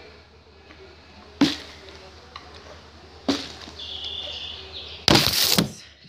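Two sharp thuds about two seconds apart as a plastic water bottle is flipped and lands. About five seconds in comes a loud clattering crash, under a second long, as the bottle hits the camera and knocks it.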